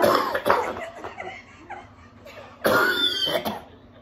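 A man coughing hard in two fits, the second with a wheezy, pitched edge, as the burn of a very hot chip catches in his throat.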